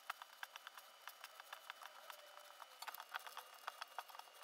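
Fingers mixing flour and water into dough in a stainless steel bowl: a faint, irregular run of small clicks and scrapes as fingertips and nails catch the metal.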